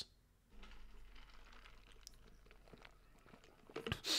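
Near silence, with faint scattered clicks and light rustling close to a microphone.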